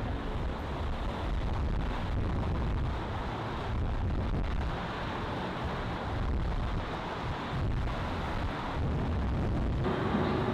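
Wind buffeting the microphone outdoors: a steady low rumble with hiss that swells and eases, with no clear single event.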